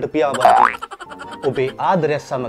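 A man talking animatedly over quiet background music, with a quick upward-sliding boing-like sound about half a second in.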